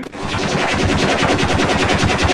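A fast, even run of sharp bangs, more than ten a second, in the manner of automatic gunfire. It starts suddenly.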